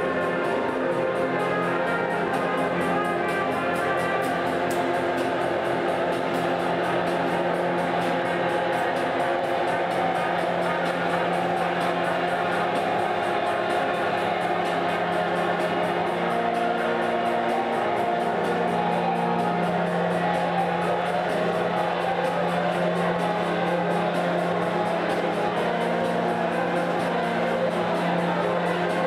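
Live rock band music: a dense, steady wash of layered held notes, the low note changing pitch a little past the middle.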